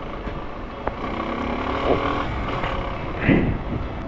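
Motorcycle riding through city traffic: its engine running steadily under road and wind noise, with the surrounding cars, and one brief louder sound about three seconds in.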